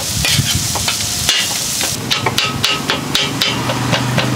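Cleaver and metal tongs chopping meat on a hot steel flat-top griddle. At first the meat is sizzling, then from about halfway there are quick metallic clacks and scrapes of the blade against the griddle, several a second, with a slight ring.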